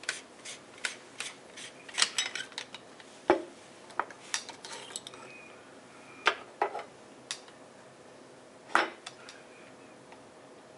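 Metal lens barrel parts and rings clinking and knocking on a wooden bench as a partly disassembled Sigma 500mm f4.5 lens is handled and set down: scattered sharp clicks, with louder knocks about three seconds in and just before nine seconds.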